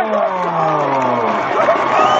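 A man's long drawn-out shout, falling steadily in pitch over about a second and a half, over crowd noise.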